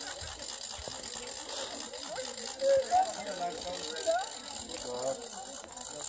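Distant voices of several people talking across an open field, under a steady high hiss. The voices are loudest for two short moments near the middle.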